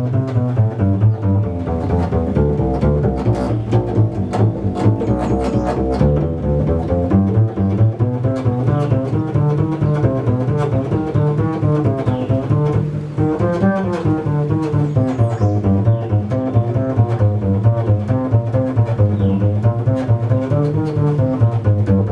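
Double bass played pizzicato: a fast, unbroken run of sixteenth notes from an etude, used as a pizzicato endurance exercise.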